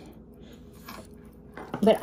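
Faint handling noise as a silver chain and ball pendant are held and moved, with a light click about a second in. A spoken word comes in near the end.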